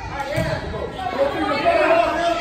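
Overlapping chatter and calls of several voices in a large indoor gym, with no single clear speaker, growing louder toward the end.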